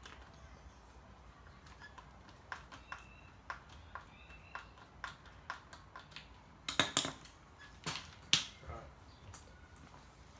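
A screwdriver turning the fasteners that clamp a shaft into a Stihl line trimmer's housing: small, sharp clicks about twice a second, then a few louder clacks near seven and eight seconds in.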